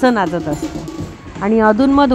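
Women's voices singing a traditional song for the jhimma circle dance, with drawn-out held notes, breaking off about half a second in and resuming about a second and a half in.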